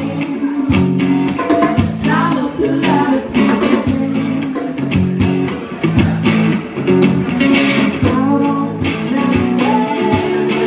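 Live band playing a blues-rock song: electric guitar over steady hand-drum and cajón percussion, with singing.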